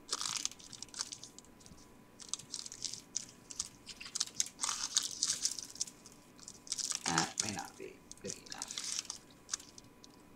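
Pleated paper cupcake liners rustling and crinkling as they are pressed flat by hand, in short irregular bursts.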